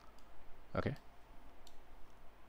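A few faint, short computer clicks, irregularly spaced, as a node is copied and placed in the 3D software. A single word is spoken a little under a second in.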